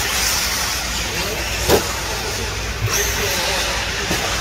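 1/10-scale short course RC trucks running on a dirt track, heard as a steady hum of motors and tyres with faint rising and falling whines. There is one sharp knock about two-thirds of the way through.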